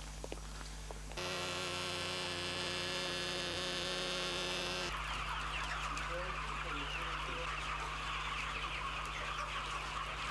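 A motor drones at a steady, even pitch from about one second in. At about five seconds it gives way to a crowd of young chicks peeping busily, their many high chirps overlapping to the end.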